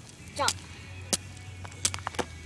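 Jump rope slapping the ground as it is swung, sharp smacks about two-thirds of a second apart.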